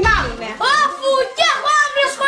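Only speech: a child's high-pitched voice talking in several short phrases.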